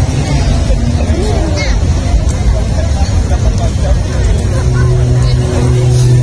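Crowd voices over a heavy low rumble. About four and a half seconds in, a steady low hum sets in underneath.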